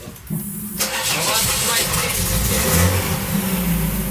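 Audi 100 C3 2.3E five-cylinder petrol engine is cranked and catches, then runs steadily. The revs rise briefly near three seconds in.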